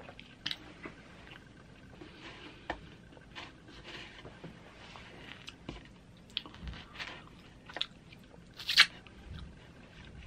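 Close-up mouth sounds of chewing flatbread pizza, with short wet clicks scattered throughout. Crust tears and crackles as a slice is pulled apart, with one loud crackle near the end.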